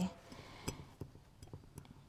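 A few faint, scattered light clicks of a small metal choke door being fitted into the slotted choke shaft of a Marvel-Schebler carburetor.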